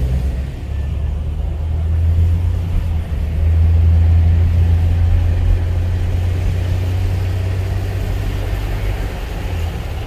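Car engine and road noise heard from inside the cabin: a steady low drone that swells about three seconds in as the car pulls away from the light and picks up speed, then eases a little.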